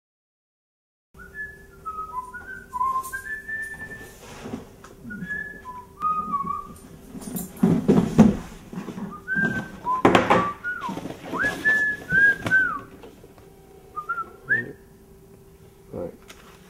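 Someone whistling a tune in short notes that bend up and down, starting about a second in, with a few knocks around the middle and a faint steady hum underneath.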